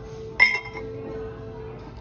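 A single sharp clink of ceramic mugs knocking together in a wire shopping cart about half a second in, ringing briefly, over background music.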